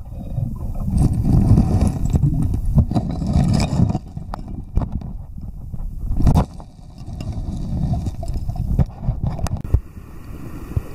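Muffled rumble of creek water heard through a camera held underwater, with irregular knocks and scrapes of stones and gravel on the creek bed and one heavier thump about six seconds in.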